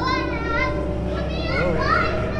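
High-pitched voices calling out with sliding, rising and falling pitch, twice, over a steady low hum.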